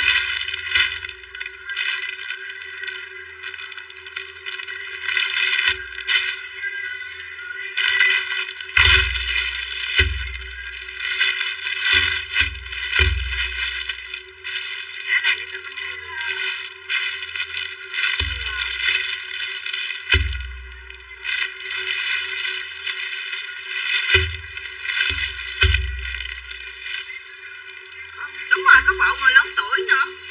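Clear plastic garment bags crinkling and tearing as clothes are unwrapped and handled, with irregular crackles and dull thumps.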